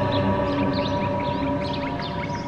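A sustained droning chord from the background score, slowly fading, with birds chirping over it.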